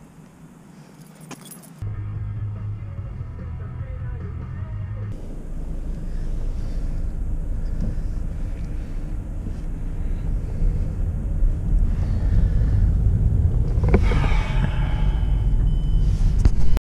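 A car's engine and road rumble heard from inside the cabin as the car creeps along, growing steadily louder. A short sound falling in pitch rises above it near the end.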